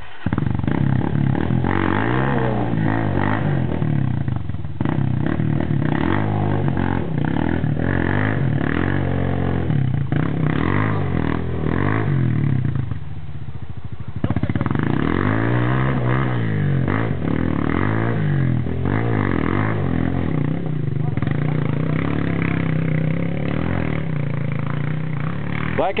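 Enduro motorcycle engine revving up and down again and again as it climbs a muddy trail, with the throttle easing off for a moment about halfway through.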